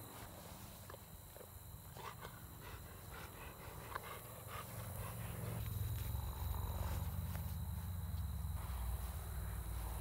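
Golden retriever sniffing and snuffling through tall grass, with short rustles and sniffs early on. A low rumble on the microphone swells in about halfway through.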